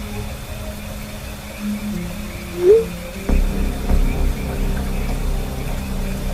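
Dark, eerie ambient background music with a deep low drone that comes in suddenly a little over three seconds in. About two and a half seconds in, a short 'bloop' chat-message notification sound effect plays once.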